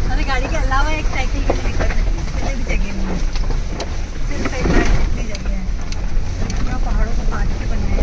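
Off-road vehicle driving slowly over a rocky dirt track, heard from inside the cabin: a steady low rumble of engine and tyres, with scattered clicks and knocks as it rolls over the stones.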